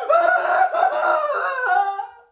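A young man shrieking in a high, strained voice: one long wail that steps down in pitch a couple of times and breaks off at the end.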